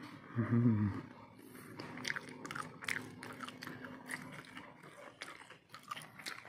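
A person chewing crunchy food close to the microphone, a quick run of crisp crunches in the second half, after a brief low vocal sound near the start.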